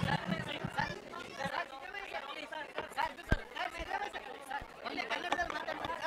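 Overlapping chatter of several people talking at once in a room, with a few low knocks and one sharp knock about three seconds in.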